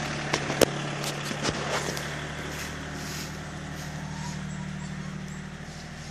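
A vehicle engine idling steadily, its hum slowly growing fainter, with a few sharp clicks in the first two seconds.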